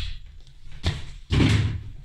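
A palm slapping a rolled-up sock ball across a hard floor into a plastic basket: a short knock a little under a second in, then a louder, heavier thud.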